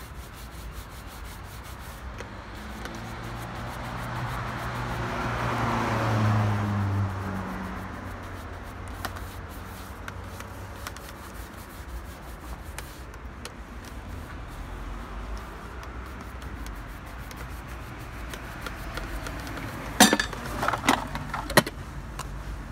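A shoe brush rubbing back and forth over a leather shoe, a steady brushing. A low hum swells and fades a few seconds in, and a few sharp knocks on wood come near the end.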